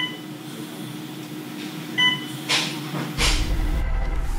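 Two short electronic beeps about two seconds apart over a steady low hum, with two brief hissing noises and a low rumble coming in near the end.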